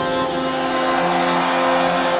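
A live folk-metal band holding a steady, sustained chord between songs, with a lower note coming in about a second in, over a faint crowd noise beneath.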